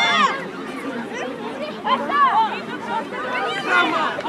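Overlapping shouts and chatter from several voices, many of them high children's voices, with no clear words.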